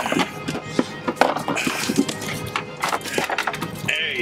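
A freshly landed bonita thrashing on a boat, its tail and body beating against the hull in a rapid, uneven run of knocks, with background music.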